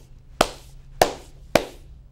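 Three sharp hand smacks about half a second apart, struck for emphasis.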